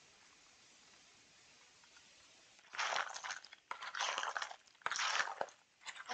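Trail mix of nuts and dried fruit being tossed by hand in a large plastic bowl: three rustling, crunching bursts that begin about halfway through.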